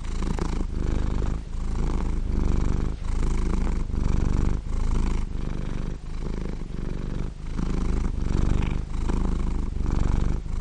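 A domestic cat purring close to the microphone: a steady low rumble that swells and dips in an even rhythm with each breath in and out.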